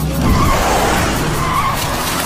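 A loud rushing noise over background music, strongest in the first half.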